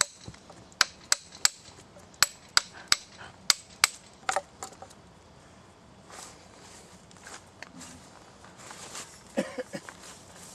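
Hatchet chopping into a wooden log by hand: about ten sharp strikes at a quick, uneven pace, stopping about halfway through, then faint rustling.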